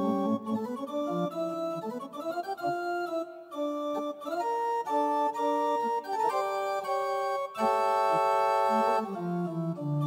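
Electronic keyboard with an organ-like sound, played as free improvisation: sustained chords that shift from one to the next, with sliding pitches around two seconds in and a long held chord near the end.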